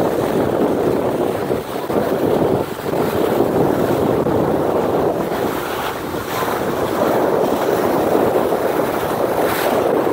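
Steady rushing of a scallop vessel's bow wave breaking along the hull, mixed with wind buffeting the microphone.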